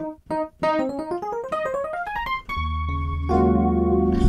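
Chorused software electric piano played from a keyboard: a few single notes, then a quick rising run, then a held chord over a low bass note starting about two and a half seconds in.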